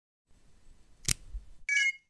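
Logo intro sound effect: a faint hiss, a sharp hit about a second in, then a short bright chime-like ding that ends just before silence.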